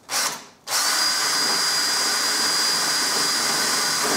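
Cordless drill pre-drilling a hole through a plastic side-skirt extension: a brief burst of the trigger, then from just under a second in a steady run with a constant high whine.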